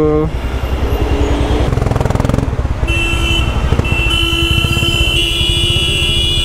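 Motorcycle engine running and revving up as the bike pulls away from a stop in traffic, with a steady high tone joining in about three seconds in.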